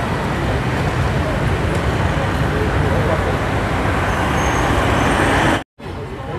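Steady street traffic noise with people talking over it; the sound cuts off abruptly for a moment near the end.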